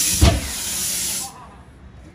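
An aerosol spray can hissing in one steady burst that stops after about a second and a quarter, with a short low thump near the start.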